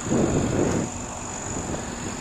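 Steady low hum of an idling engine, with a short rush of noise in the first second.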